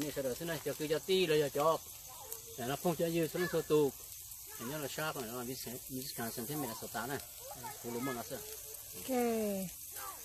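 A man talking, over a faint steady hiss in the background.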